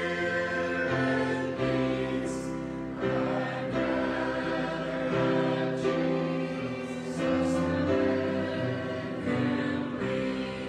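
Mixed choir of men and women singing in slow, held chords, the notes changing about once a second, with the hiss of sung s-sounds now and then.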